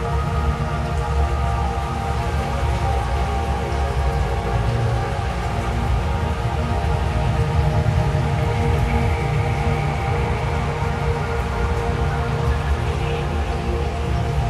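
Dark ambient drone music: many sustained tones layered over a deep, steady low rumble, with rain sounds mixed in.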